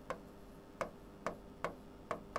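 Marker tip tapping and clicking against a whiteboard while writing: about four short, sharp ticks, unevenly spaced.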